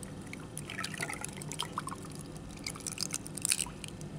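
Blue Powerade poured from a plastic bottle into a glass full of ice cubes, the liquid trickling and splashing over the ice. Scattered small clicks and pops run through the pour, a few louder ones near the end.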